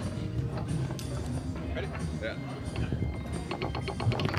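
Foosball table sounds, with the ball and rods clicking over a low murmur of spectators' voices. A quick run of sharp clicks comes near the end as the ball is put back into play.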